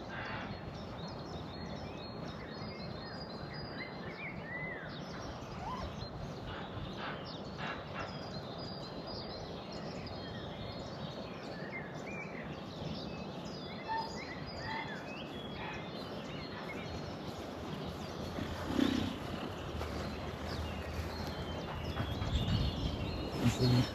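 Outdoor ambience: scattered songbird chirps and short calls over a steady background hiss, with one brief louder low thud near the end.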